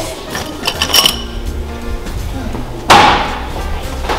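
Light metallic clinks of a wire whisk being pulled from a crock of kitchen utensils, then one sharp knock about three seconds in, over background music.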